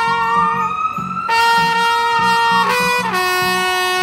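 Trumpet playing long held notes: a brief break about a second in, the same note again, then a step down to a lower held note near the end. A siren wails in the background, rising and then falling, and a rhythmic backing track pulses underneath from a small portable speaker.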